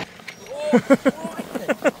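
A person's voice: a few short vocal sounds starting about half a second in, too brief or unclear to be written down as words.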